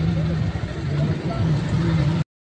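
Busy street traffic close by: an auto-rickshaw's engine running with a steady low drone over general road noise.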